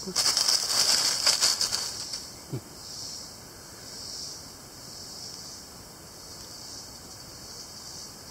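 Dry leaves crackling and rustling for about two seconds as a large black snake slithers off through the leaf litter, which the finder thinks is a black racer. Then a steady high insect chorus, cricket-like, that swells about once a second.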